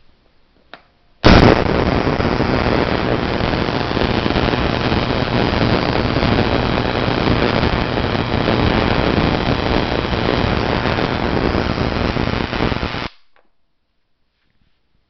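Spark gap fed by a 10 kV step-up transformer firing continuously: a loud, rapid crackling buzz that starts suddenly about a second in, holds steady, and cuts off abruptly about a second before the end.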